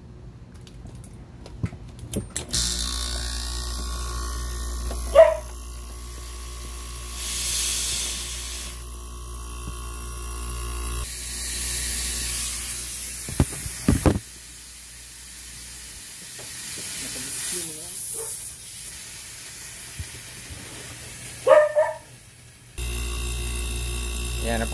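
An air-conditioner compressor used as an air pump starts running about two and a half seconds in, with a steady hum and hiss as it pressurises the AC lines for a leak test. A dog barks a few times over it, loudest near the start and near the end.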